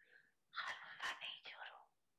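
Faint, breathy speech, a person's voice talking quietly for about a second and a half, sounding close to a whisper.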